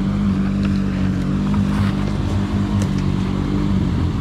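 ATV engine idling steadily at an even pitch.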